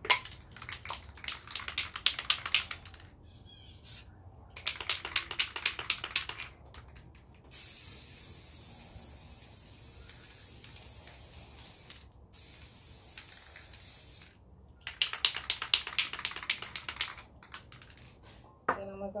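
Aerosol spray paint can shaken hard, its mixing ball rattling quickly, then two long steady hisses of spraying, and near the end another bout of rattling as the can is shaken again.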